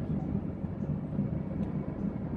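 A steady low background rumble with no speech.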